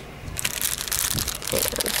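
Clear plastic packets of paper flowers crinkling as they are picked up and handled, starting about half a second in.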